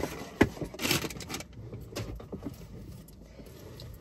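Handling noises inside a car: rustling and a few light knocks and clicks as someone shifts about and picks up a seat accessory. There is a short burst of rustling about a second in, then the sounds grow fainter.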